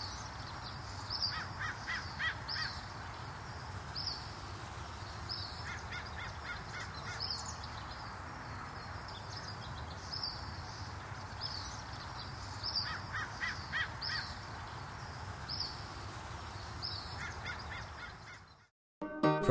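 Birds calling: short high chirps repeating about once a second, with a few quick runs of lower notes, over a steady background noise.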